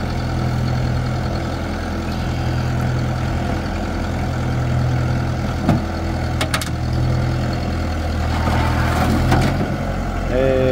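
Farm tractor engine running at a steady idle, with a few short sharp knocks about halfway through and again near the end.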